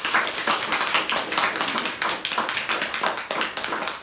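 A small group of people applauding, a steady run of many hand claps close together.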